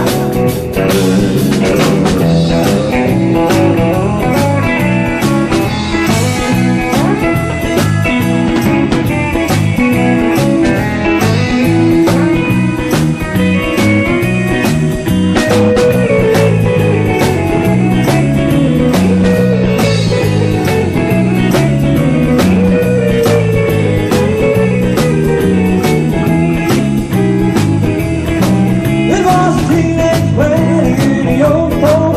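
Live band music: electric guitars over bass and a drum kit keeping a steady beat, with a tambourine shaken along.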